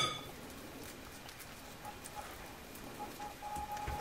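A metal spoon's clink against a glass mixing bowl, its short ring fading at the start; then only faint, soft handling sounds as hands press moist biscuit dough.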